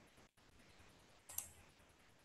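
Near silence, broken by a single short click about one and a half seconds in.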